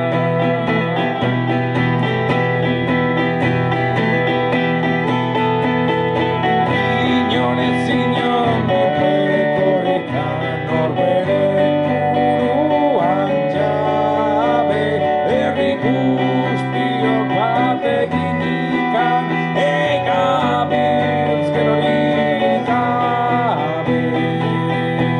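Steel-string acoustic guitar played live: a steady picked and strummed accompaniment with sustained low bass notes. A man's singing voice joins over it in the second half.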